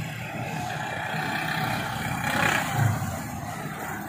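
Motor traffic: vehicle engines running with a steady low rumble, swelling louder a little before three seconds in.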